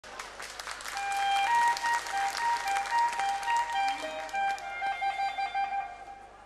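Audience applause with a high clarinet melody starting over it, skipping back and forth between two notes. The clapping thins out after about four seconds, leaving the clarinet playing the opening of a polka.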